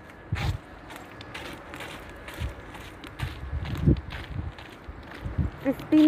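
Footsteps of a person walking, a string of irregular soft thumps mixed with rustling from a handheld phone. A woman's voice starts near the end.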